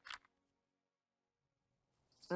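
Near silence at a scene change: one brief faint sound just at the start, then quiet.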